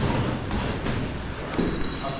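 A few thuds of Muay Thai sparring, gloved strikes and kicks landing and feet on the mat, with one sharp slap about one and a half seconds in, over steady gym background noise.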